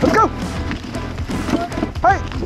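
Background music, with a dog giving a short, sharp yelp just after the start.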